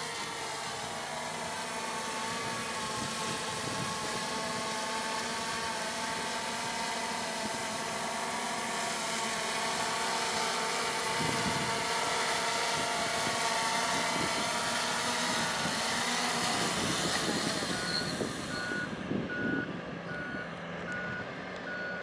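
Small quadcopter's electric motors and propellers whining steadily as it descends to land, the pitch shifting as the motors slow near touchdown. Near the end a series of short, evenly spaced electronic beeps sounds, about one and a half a second.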